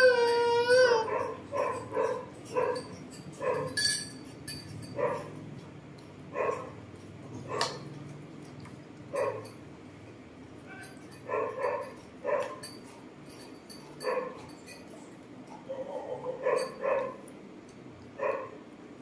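An animal making short, high-pitched calls, one after another about once a second, after a longer wavering call at the start.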